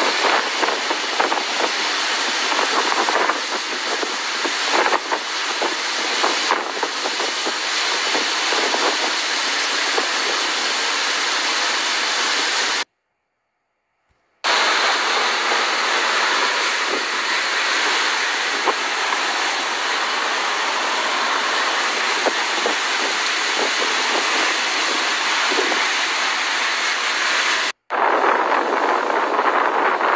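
Steady rushing noise of a motor yacht running at speed on open sea: wind and churning wake water. It cuts out completely for about a second and a half near the middle and drops out briefly near the end.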